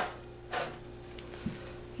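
Quiet room with a faint steady hum and soft handling noises: a brief rustle about half a second in and a light tap about a second and a half in, as ingredient containers are handled at the soap pitcher.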